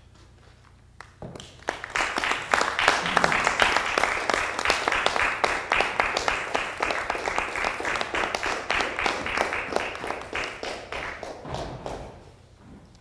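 Audience applauding: it starts about a second in and dies away near the end.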